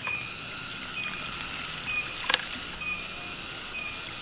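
Hydraulic ram pump with twin waste valves running on its own: a few sharp clacks from the valves, the loudest about two seconds in, over a steady high hiss.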